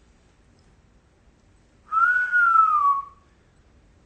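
A man whistles one long note that rises a little and then glides down in pitch, lasting just over a second and starting about two seconds in.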